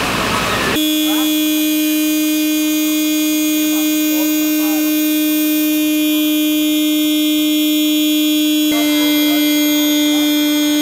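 A broad, engine-like noise that abruptly gives way, just under a second in, to a loud steady machine hum at one constant pitch with many higher overtones, running on unchanged in pitch through another abrupt shift near the end; faint chirps sound above it.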